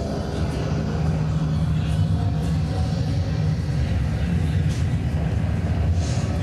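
Loud, steady low electronic drone played through a concert sound system, a deep rumble with no clear beat.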